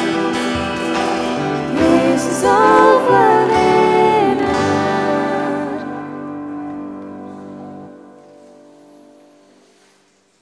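A worship band with female singers and acoustic guitar ending a song: the last sung phrases end about five seconds in, and the final chord rings on and fades out over the remaining seconds.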